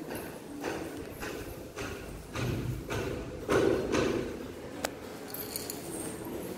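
Footsteps on a tiled floor, about two steps a second, as someone walks through an empty room, with a single sharp click near the end.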